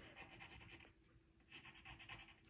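Colored pencil scratching across watercolour paper in rapid, faint strokes as the outlines are darkened, with a short pause in the middle.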